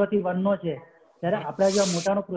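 A man talking, with a short pause about a second in. A bright hiss lies over his voice for the last half second or so.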